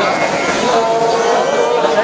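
Several voices chanting together, holding long steady notes.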